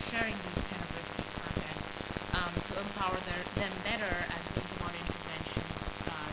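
A person talking faintly, half buried under a continuous dense crackle of noise in the recording.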